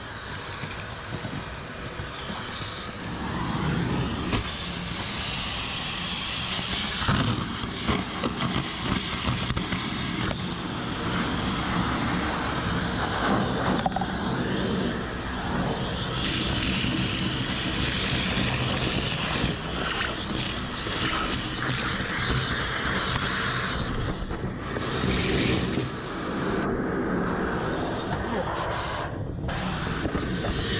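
Shop vacuum running steadily with a loud rushing hiss as its hose sucks dry leaves and debris out of a truck's cowl, with crackling as leaves are drawn in. The rush dips briefly a few times near the end.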